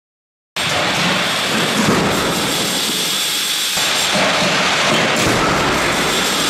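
Side-impact crash test run: a loud, steady rushing rumble from the moving barrier trolley, starting abruptly about half a second in, with no single sharp bang standing out.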